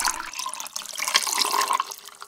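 Blue liquid poured in a thin stream from a bottle into a tall glass packed with ice cubes, splashing and trickling down over the ice with many small crackles.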